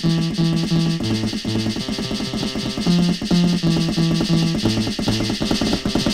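Alesis Performance Pad Pro electronic drum pad playing a dance-style beat: electronic drums with a fast, steady hi-hat tick over a bass line of short repeated notes that switch between two pitches.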